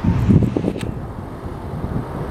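Class 68 diesel-electric locomotive's Caterpillar V16 engine as a low rumble while it approaches at low speed, with gusts buffeting the microphone in the first second.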